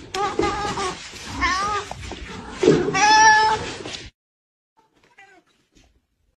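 A domestic cat meowing three times in quick succession, the third call the loudest and longest; the sound cuts off abruptly about four seconds in.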